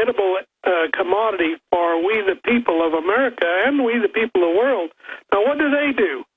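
Speech only: a man talking in a continuous stream with brief pauses, his voice thin and cut off at the top as over a telephone line.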